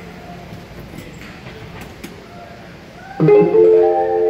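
Electronic door-warning chime of an airport people-mover platform: several steady tones sounding together, starting about three seconds in, just before the "doors closing" announcement. Before it, only a low station hum.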